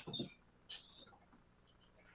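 A few faint, short clicks and a brief low sound within the first second, then quiet room tone.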